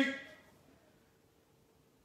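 A man's counted word fades out in the first half-second, then near silence: room tone with a faint steady hum.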